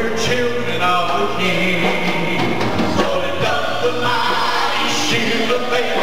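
Live gospel song: several voices singing together over electric bass guitar and drums.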